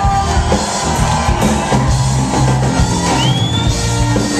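Live soul band playing an instrumental passage with drum kit and bass to the fore. A short rising high note comes about three seconds in.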